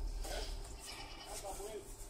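People's voices talking, over a steady low hum.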